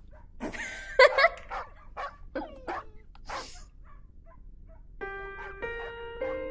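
A puppy's short barks and yips, the loudest about a second in and smaller falling ones after, with breathy huffs between them. Soft music with held notes comes in near the end.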